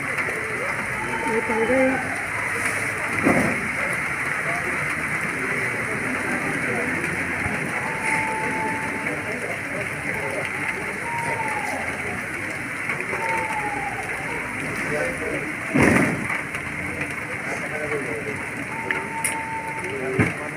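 Steady rain hiss over an outdoor parade ground, with distant indistinct voices. Two sharp thumps come through, about three seconds in and again near sixteen seconds.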